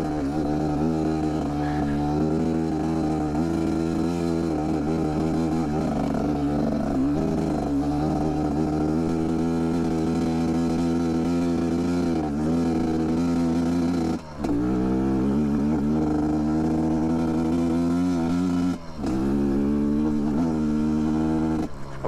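GPX Moto TSE250R single-cylinder dirt bike engine pulling steadily under load on a rocky climb, its note wavering slightly with throttle and dropping off briefly twice in the later part. It is breathing through a FISCH Kit 20 spark arrestor in the tailpipe, which the rider thinks may be restricting it somewhat.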